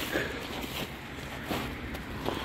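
Steady low outdoor background noise with a few faint, soft footsteps on snow and dry leaves.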